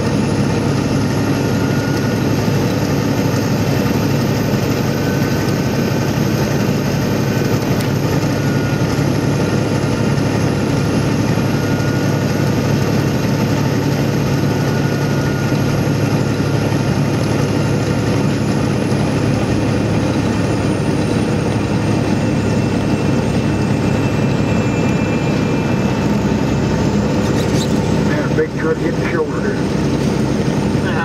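Steady engine and road noise of a vehicle cruising at highway speed, heard from inside the cab, with a faint high whine that drifts slowly in pitch.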